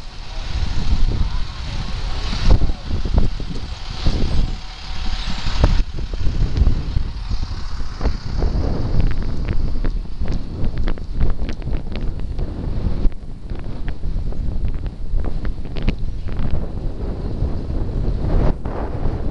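Wind buffeting the microphone of a camera carried on a moving bicycle, a constant low rumble, with frequent short clicks and rattles from the bike and camera, thickest in the second half.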